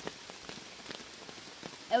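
Steady rain, with many separate drops tapping on the tarp shelter overhead. A boy starts to speak right at the end.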